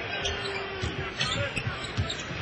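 A basketball dribbled on a hardwood court, repeated bounces, over the noise of an arena crowd.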